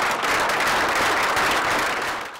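Audience applauding, many people clapping at once.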